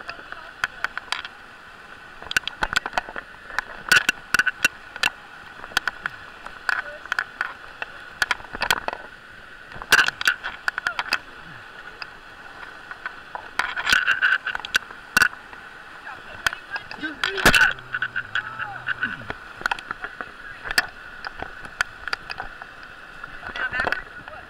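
Whitewater of a river rapid rushing steadily, close up, with frequent sharp knocks and splashes as the raft sits pinned against a boulder.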